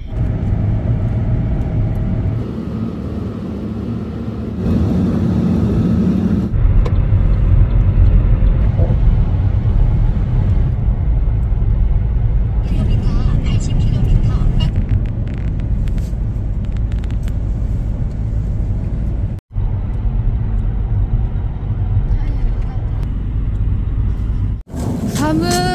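Steady low rumble of road and engine noise inside a car travelling on an expressway. The sound briefly cuts out about twenty seconds in.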